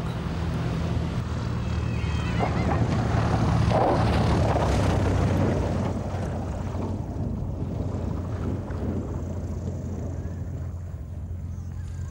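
Cessna 185's engine and propeller running as the plane lands and taxis on a grass strip: a steady low drone that swells around four seconds in, then eases back.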